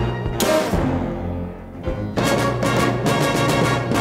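Orchestral film-score music. A loud hit about half a second in rings away into a brief quieter passage, and the full orchestra comes back in a little after two seconds with a run of sharp accented strikes.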